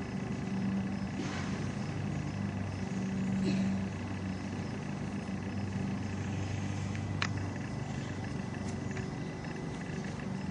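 Steady low hum of a running engine, swelling slightly about three seconds in, with one brief high chirp about seven seconds in.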